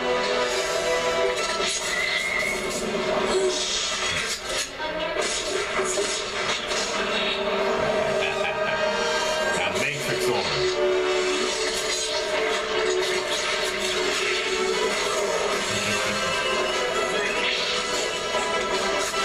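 Music playing throughout at a steady level, with voices mixed in.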